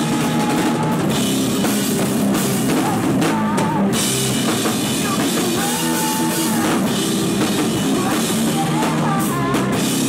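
A rock band playing loud and live: a drum kit with cymbals driving a steady beat under electric guitar.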